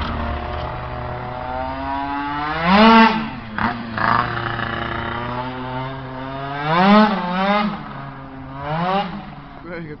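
Tuned two-stroke scooter engine being revved while riding, its pitch climbing and falling away three times: loudest about three seconds in and around seven seconds, with a smaller rev near nine seconds.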